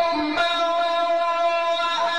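A male Quran reciter's voice holds one long, steady high note in melodic tajweed chanting, with reverberation. The note starts fresh about half a second in.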